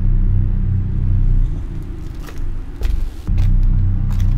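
A deep, low rumbling drone, typical of a horror film's soundtrack, swelling and dipping in waves. It fades in the middle and comes back strongly near the end, with a few faint sharp ticks over it.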